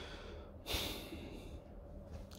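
A man breathing out heavily, a sigh with a soft hiss of breath about two-thirds of a second in.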